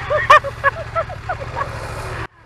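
A person laughing in a run of short bursts that fade away, over the low steady running of the BMW F900R's parallel-twin engine.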